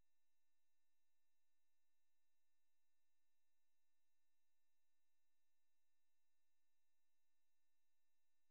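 Near silence, with only a very faint steady tone.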